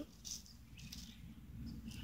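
A small dog, a chiweenie, sniffing faintly with its nose in a plant, a few short soft sniffs with light rustling.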